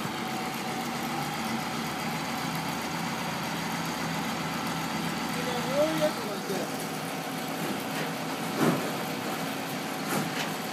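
Heavy construction machinery's diesel engine running steadily, a constant even drone.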